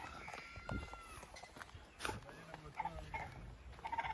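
Faint, distant voices, with one thin, high, drawn-out call lasting about a second near the start.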